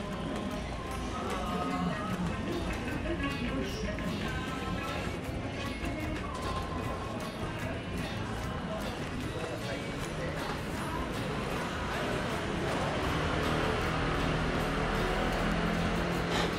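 Shopping-arcade ambience: music playing, indistinct voices, and footsteps on the tiled walkway.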